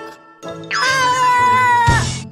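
A cartoon character's long meow-like cry, held at nearly one pitch for over a second over background music, cut off by a low thump near the end.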